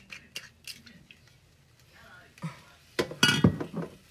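Kitchen clatter of utensils and cookware: a few light clicks at the start, then a loud run of clinking and knocking from about three seconds in.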